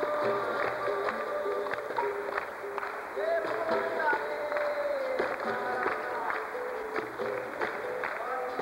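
Capoeira roda music: voices singing with long held notes over berimbaus struck in a steady rhythm, with caxixi shakers and hand clapping.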